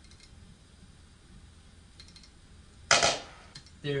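A snare drum sample from an online beat-making program, played once about three seconds in: a single sharp crack that fades quickly.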